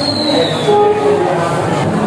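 Many students' voices chattering over one another at once, with a brief high squeal falling in pitch in the first second.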